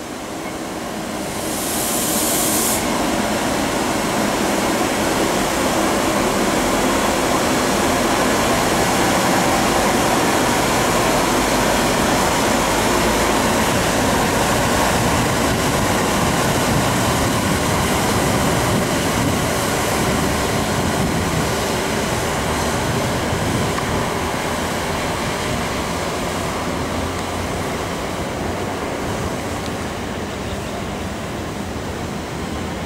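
General Electric E42C electric locomotive moving off: a steady running sound that builds in the first second or two and slowly fades over the last ten seconds as it draws away, with a short burst of air hiss about two seconds in.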